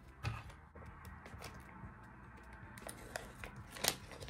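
A small plastic sachet of bleaching powder being handled and opened: a sharp click about a quarter second in, faint rustling, and a few sharp clicks near the end.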